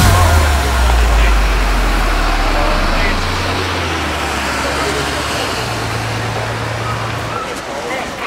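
Street ambience: a steady wash of traffic noise with indistinct voices, under a low held bass note that stops shortly before the end.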